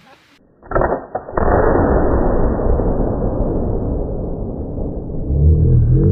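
Tannerite exploding-target blast, heard deep and muffled: a first bang a little under a second in, then a louder blast about half a second later that rumbles on and fades slowly over about four seconds. Music with steady low held tones comes in near the end.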